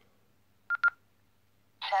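Baofeng GT-3TP handheld transceiver switching on: two short high beeps in quick succession just under a second in, then near the end its synthesised voice prompt starts announcing "channel mode".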